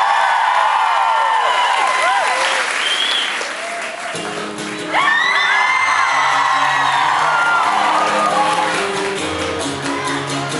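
Concert crowd cheering, whooping and applauding. About four seconds in, an acoustic guitar starts playing a song's opening notes, and the cheering swells again over it.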